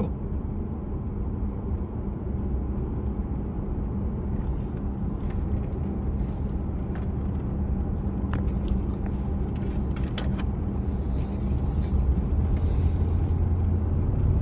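Steady engine and road noise heard from inside a vehicle driving on a paved road: a low hum that grows a little louder near the end, with a few faint clicks or rattles in the middle.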